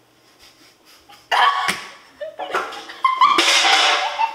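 Quiet for about a second, then bursts of laughing and squealing voices, loudest near the end.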